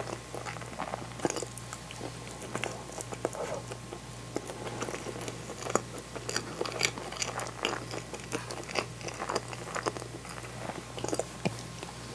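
Close-miked chewing and wet mouth sounds of someone eating natto rice, with irregular small clicks and scrapes of a wooden spoon against the bowl.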